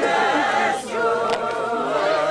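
Group of Doukhobor men and women singing together a cappella in slow, long held notes, with a short pause just before a second in.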